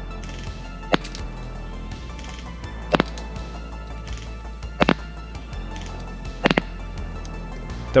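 Four single shots from a Specna Arms SA-H12 airsoft electric gun fired on semi-auto, each a short sharp crack, spaced about two seconds apart, over steady background music.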